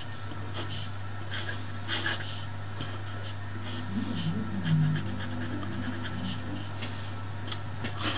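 Straight steel nib of a dip pen scratching on paper in short, light strokes while a capital letter is written, over a steady low hum.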